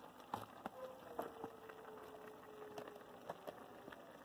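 Faint soft patter and a few light knocks as cooked noodles are tipped from a plastic container into a pot of vegetables in sauce.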